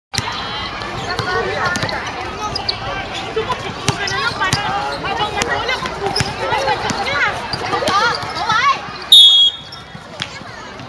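A basketball bouncing on a hard outdoor court, with players' and onlookers' voices calling throughout. About nine seconds in, a short, loud whistle blast, the loudest sound here, typical of a referee stopping play.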